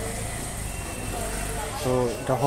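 A pause in a man's speech filled by a steady low hum and faint background noise; his voice resumes near the end.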